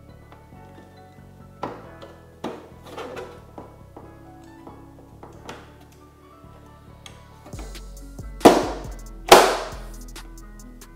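A motorcycle's plastic side panel being pushed and knocked into its mounting clips by hand: a few light taps and knocks, then two loud thumps near the end as it is pressed home, over background music.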